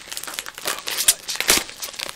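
Packaging crinkling and rustling as it is handled and unwrapped, with a few sharper crackles about one and one and a half seconds in.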